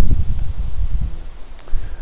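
Loud, irregular low rumble of handling and wind noise on a handheld camera's microphone as the camera is carried along. It starts suddenly.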